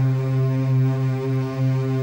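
Background score holding one long, low, steady note.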